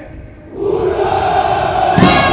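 Ranks of soldiers shouting together in one long, unbroken cry, the massed 'Ura!' of troops answering a commander's parade review; it starts about half a second in and holds loud.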